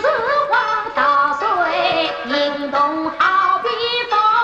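Yue opera singing: a woman's voice sings a lyric line in long, ornamented phrases that slide and waver in pitch, with instrumental accompaniment.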